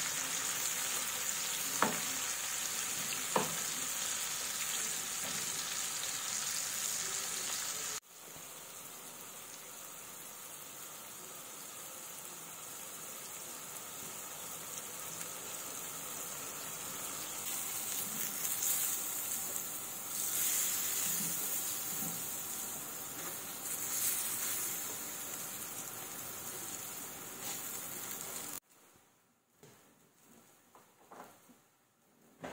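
Sliced common puffball mushrooms sizzling as they fry in melted butter in a frying pan, with a couple of sharp clicks of a utensil against the pan in the first few seconds. About eight seconds in the sizzle drops suddenly, then grows steadily louder before cutting off near the end.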